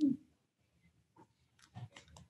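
A short vocal sound from a person, falling in pitch and lasting about a fifth of a second, right at the start. Then quiet room tone over a call, with a few faint clicks and a soft breath-like sound near the end.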